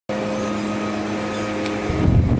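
Steady mechanical hum with a few fixed tones over a background of noise, getting louder in the low end near the end.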